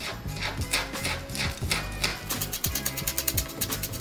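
Kitchen knife chopping chives and garlic on a cutting board: quick repeated clicks of the blade against the board, coming fast and even in the second half, over background music.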